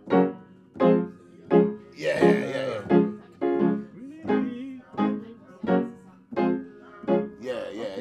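Yamaha upright piano played in short, detached chords struck at an even pulse, about one every three quarters of a second, each ringing briefly before the next.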